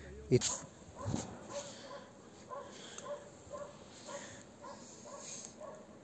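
Faint, short pitched animal calls repeating evenly about twice a second, like yelps.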